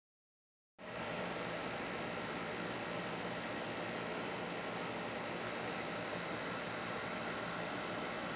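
Steady hiss with a faint high steady tone, starting just under a second in.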